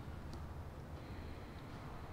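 Quiet room tone: a faint steady low hum with a light haze of background noise, and one faint tick about a third of a second in.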